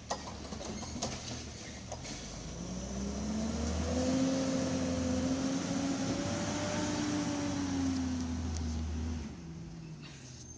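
Garbage truck's diesel engine running, then revving up about three seconds in to a steady higher drone that falls off and cuts back about nine seconds in.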